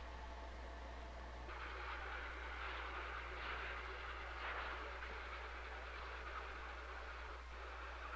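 A steady rushing hiss comes in about a second and a half in, over a low steady hum.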